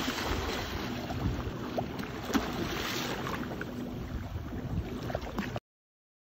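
Water splashing in the shallows as a hooked shark thrashes while being landed by hand, with wind buffeting the phone microphone. The sound cuts off suddenly near the end.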